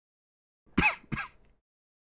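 A man coughs twice in quick succession, two short bursts about a third of a second apart.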